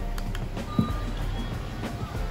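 Music playing through a portable battery PA speaker, with a short beep a little under a second in as a button on its MP3-player panel is pressed.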